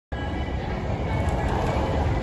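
Street noise: a steady low rumble of vehicles, with no clear single event.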